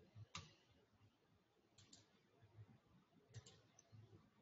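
Near silence, broken by a few faint, short clicks.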